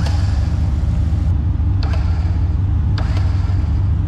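Electric winch motor running steadily as it spools in unloaded synthetic line, a low continuous drone, with a few sharp clicks over it.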